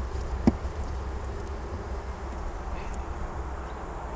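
Sicilian (Sicula) honeybees humming in an opened wooden hive, the restless hum of a queenless colony that the beekeeper hears as a sign the colony is not in order. One short knock about half a second in.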